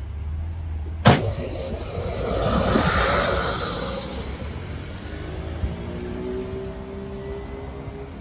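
Road traffic passing close by: a large vehicle goes past, its noise swelling to a peak about three seconds in and fading, with cars following. A sharp click about a second in.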